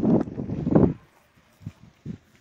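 Wind buffeting a phone's microphone, a low rumbling noise with a couple of gusts, cutting off abruptly about a second in, leaving near silence broken by a few faint knocks.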